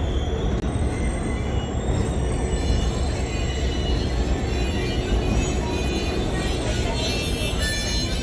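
Steady rumble of a passenger train car rolling along the rails, with music playing over it. The sound drops out briefly just under a second in.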